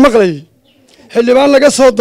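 A man speaking in two short phrases, with a brief pause between them.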